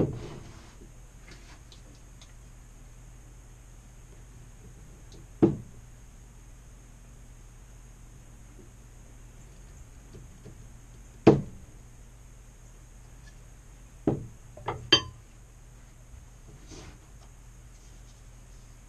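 Hard objects knocking and clinking as tools and parts are handled and set down at a stopped wood lathe. There are single sharp knocks every few seconds and a quick cluster of three near the end, the last ringing slightly, over a steady low hum.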